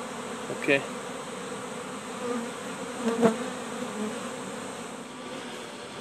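A large mass of honey bees buzzing steadily, a colony shaken out onto the ground and marching into a hive box. A short knock about three seconds in.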